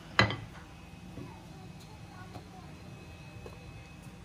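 A wooden rolling pin working puri dough on a marble rolling board. There is one short sharp sound just after the start, then quiet handling over a low steady hum.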